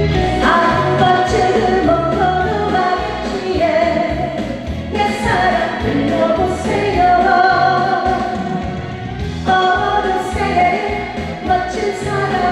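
A woman singing a Korean trot song into a microphone over a backing track with a steady beat. Her phrases break briefly about five seconds in and again near the nine-second mark.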